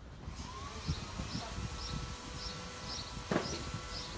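An insect chirping in short, evenly spaced pulses, about two a second, over a faint steady hum and low rumble. A single sharp knock comes about three seconds in.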